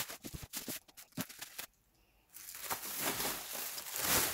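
Plastic bubble wrap crinkling and crackling as it is pulled off a cardboard figure box: scattered crackles at first, a brief gap of silence near the middle, then a denser, steady rustle.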